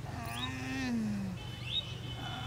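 A man's drawn-out groan of pain from a hurt back, sliding down in pitch over about a second. Two short, high, rising chirps sound behind it.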